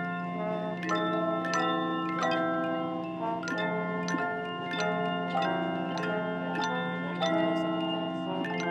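A handchime choir playing a tune: chords of struck chimes, each note ringing on, over a low note held and re-struck throughout.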